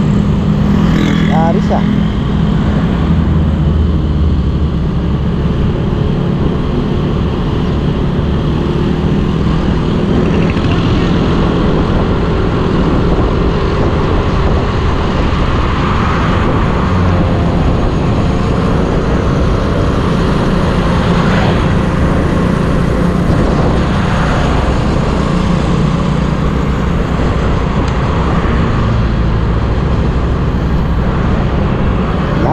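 Motorcycle engine running steadily at cruising speed, with continuous wind and road noise from riding.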